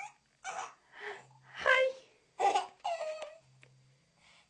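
Six-month-old baby vocalizing in about five short high-pitched squeals and babbles.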